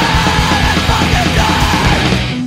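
Loud punk rock recording: a full band with drums and shouted vocals.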